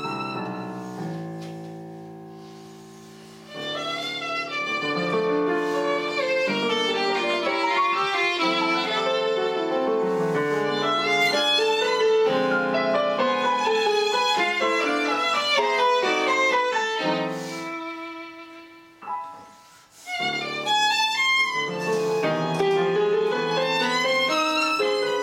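Violin and digital piano playing a classical duet. A held chord dies away over the first few seconds before both instruments come back in, and the music thins to a brief lull about three quarters of the way through before picking up again.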